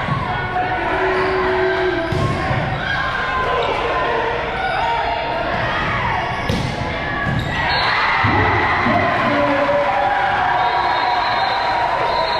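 Volleyball being struck during a rally in a large, echoing gym, several sharp ball hits over the steady talk and shouts of players and spectators. About eight seconds in the crowd grows louder, cheering as the point ends.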